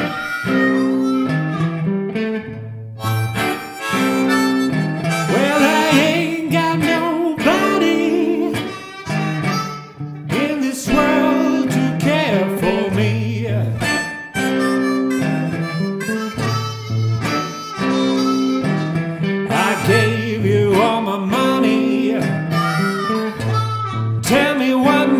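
Hohner harmonica playing a blues solo with bent, wavering notes over an electric guitar accompaniment, a slow blues with a low guitar figure recurring about every four seconds.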